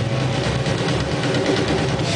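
Indie-rock band playing live, loud: a dense wall of distorted, noisy guitar over a heavy low bass.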